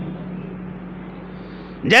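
A pause in a man's sermon, filled by a steady background hiss with a low hum, slowly fading. His voice returns near the end.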